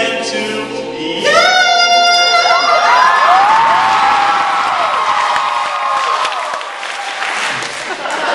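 A mixed-voice a cappella group sings and holds a chord that breaks off about two and a half seconds in. The audience then cheers, whoops and applauds, and the cheering tapers toward the end.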